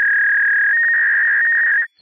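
A loud, steady electronic beep tone that steps up a little in pitch partway through and cuts off sharply shortly before the end.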